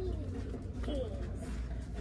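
Soft wordless cooing from a baby: a few short vocal glides in pitch, falling and rising, over a low steady hum.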